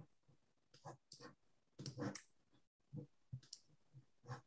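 Near silence broken by a few faint, short clicks and small noises, the loudest about two seconds in.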